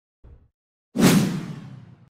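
A whoosh transition sound effect about a second in: a sudden rush of noise that fades away over about a second.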